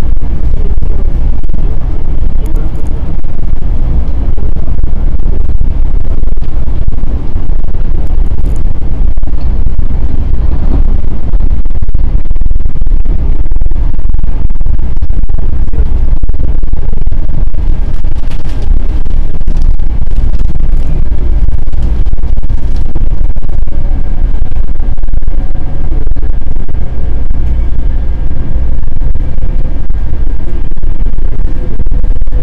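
Metro-North M7 electric train running at speed, heard from inside the passenger car: a loud, steady low rumble of wheels on rail that overloads the recording, with a faint steady tone joining in the second half.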